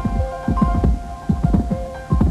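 Hoofbeats of a galloping racehorse, low irregular thuds several times a second, under background music of steady held notes.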